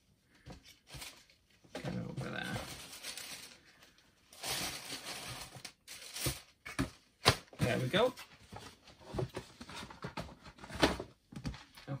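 Tissue paper rustling and crinkling as it is handled, in two long stretches, followed by a few sharp clicks and knocks.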